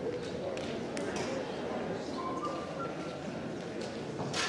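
Audience chatter in a hall: many voices murmuring together, with a few light clicks in the first second or so.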